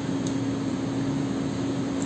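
Steady air-conditioning drone: an even rushing noise with a constant low hum.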